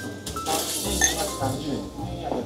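Beer being poured from a glass bottle into a glass, with a brief glassy clink about a second in.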